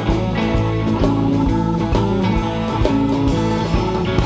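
Live rock band playing an instrumental passage: electric guitars leading over bass, keyboard and a steady drum beat.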